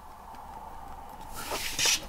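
A plastic Helix circle maker sliding across a paper journal page, heard as a brief scraping rustle about one and a half seconds in.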